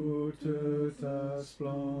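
Voice singing a French hymn, one held note per syllable with short breaks between the notes.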